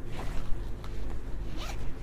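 Small zipper on the hip-belt pouch of a Montane Ultra Tour 40 backpack being pulled along, a continuous slightly uneven zip with no pause.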